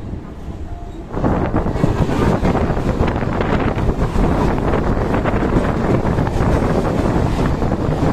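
Wind rushing over the microphone at the open doorway of a moving electric suburban train, mixed with the rumble and rattle of the train and of another train passing close alongside. The noise jumps up about a second in and stays loud.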